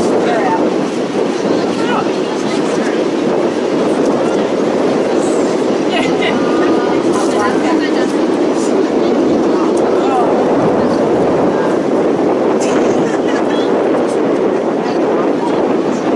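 Steady, loud wind rumble on the camera microphone, with faint distant shouts from the field.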